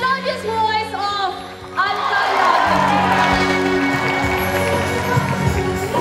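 Live stage music in a large hall. A woman's amplified voice sounds over sustained keyboard chords, and about two seconds in the full band comes in loudly and carries on.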